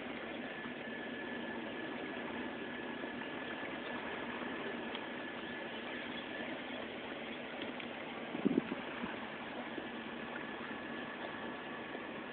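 Steady hiss of open lakeshore ambience with a faint, steady high tone running through it, and a single brief thump about eight and a half seconds in.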